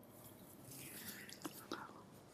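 Faint breathing and a few small mouth clicks from a man close to the microphone, over low room hiss.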